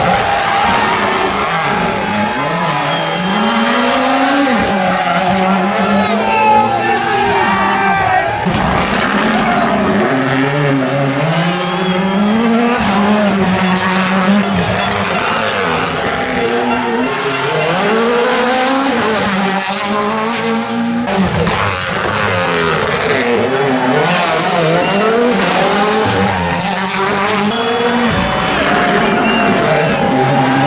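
Rally car engine revving hard through a bend, its pitch rising and falling several times with gear changes, along with tyres skidding. Spectators shout over it.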